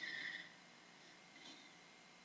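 A short, soft breath out through the nose lasting about half a second, then near silence.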